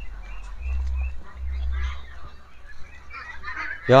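A flock of hungry white Pekin ducks calling and quacking, the calls growing busier toward the end, over a low rumble.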